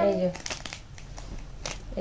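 A short vocal sound right at the start, then a few light crinkles and clicks as a small gift figurine is handled in the hands.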